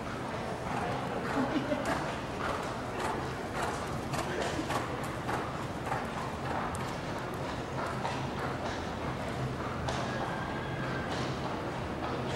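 A horse's hoofbeats cantering on dirt arena footing, with voices of people talking in the background.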